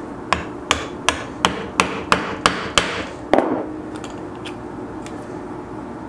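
Mallet tapping a metal eyelet setter down onto an eyelet and anvil, setting the eyelet through leather: eight quick light taps, about three a second, then one harder final blow a little past three seconds in.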